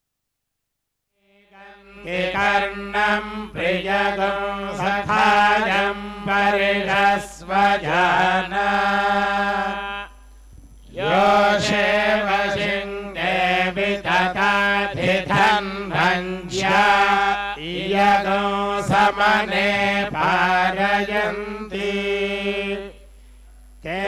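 Vedic mantras chanted in Sanskrit, a melodic recitation over a steady low held note. It begins about two seconds in and breaks off briefly near the middle and again near the end.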